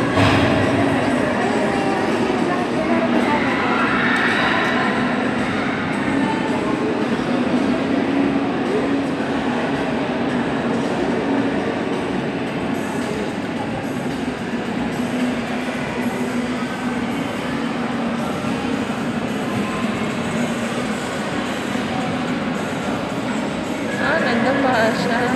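Steady, even din of a busy indoor ice rink, with a low hum running under it throughout.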